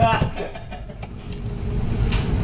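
A laugh trailing off at the start, then a low, steady rumble with a few faint knocks, growing louder in the second half: handling noise from a camcorder whose lens is covered.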